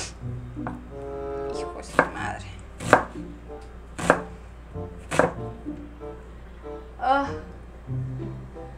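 Knife chopping a red onion on a cutting board: a handful of sharp single strokes, about a second apart.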